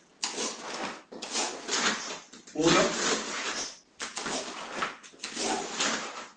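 Rustling and swishing of a karate gi in several short bursts as blocks and strikes are performed, with the count "uno" called out about two and a half seconds in.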